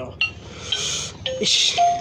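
Gemmy animated Frankenstein plush toy switched on, its sound chip starting an electronic tune through its small speaker: bursts of hiss and a few short beeping notes, one gliding down, as the music begins.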